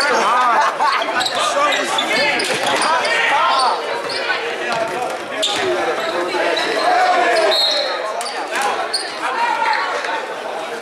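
Basketball being dribbled on a hardwood gym floor during play, with players' and spectators' voices calling out. The sound echoes in a large gym.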